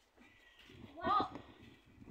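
A child's voice, one short high-pitched utterance about a second in.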